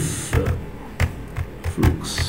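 Computer keyboard being typed on: about six separate keystrokes, irregularly spaced, as a short command is entered.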